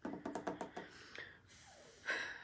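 A quick run of light taps and clicks on the tabletop, then a soft hiss near the end.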